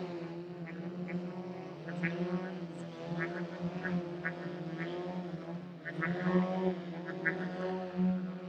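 Engines and propellers of several radio-controlled aerobatic model airplanes running together while the planes hover, a steady droning note that wavers slightly in pitch as the throttles are worked.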